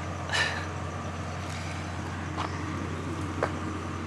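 Steady low background hum with an even hiss of outdoor ambience. A short high chirp comes about half a second in, and two faint ticks follow later.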